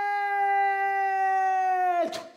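A stage performer's voice holding one long, high, theatrical note, dipping slightly in pitch as it stops at the end.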